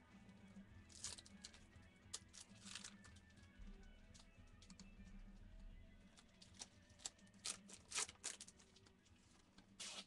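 Near silence with faint, scattered crinkles and clicks from a foil trading-card pack being torn open and its cards handled.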